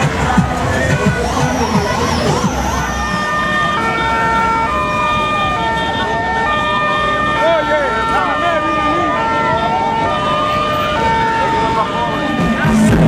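Several vehicle sirens sounding at once: a wail sweeping slowly up and down about every three seconds, overlapping a two-tone siren stepping between a high and a low note, over crowd voices.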